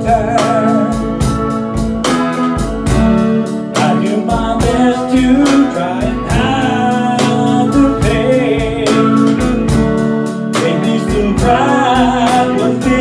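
Live blues song: electric guitar playing over drums keeping a steady beat, with a man singing.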